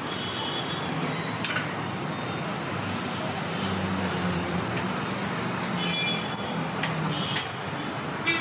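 Street traffic noise of passing road vehicles, with a low engine rumble in the middle and a few short horn toots. A single sharp clink of steel serving ware comes about one and a half seconds in.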